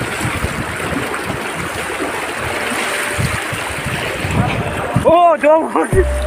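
Shallow river water rushing over rocks: a steady, even rush. A man's voice calls out near the end.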